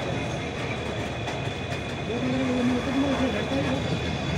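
Indian Railways BOXNHL open freight wagons rolling past close by: a steady rumble and clatter of wheels on rail, with a thin high steady whine over it. A voice joins about halfway through.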